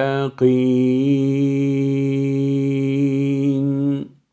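A man reciting a Qur'anic phrase in melodic tajweed style: a short opening syllable, a brief break, then one long held vowel drawn out for about three and a half seconds, stepping slightly in pitch about a second in.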